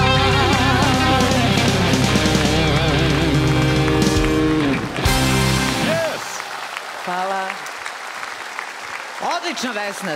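A live band plays the closing bars of a pop-rock song and stops on a final hit about five seconds in. Applause follows, with a man's voice shouting over it.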